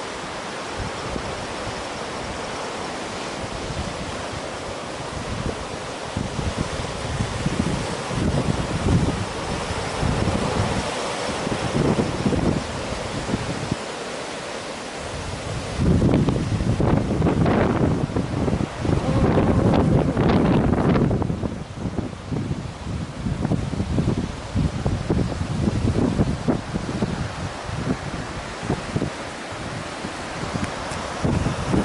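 Wind buffeting the camera microphone in uneven gusts over a steady rushing hiss. The buffeting is loudest for several seconds just past the middle.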